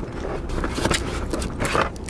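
Rustling and handling of a burrito's paper and foil wrapper, in two short bursts about a second in and near the end, over a steady low rumble in a car cabin.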